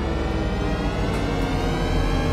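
A loud, steady low rumble with sustained droning tones over it, from the anime edit's soundtrack.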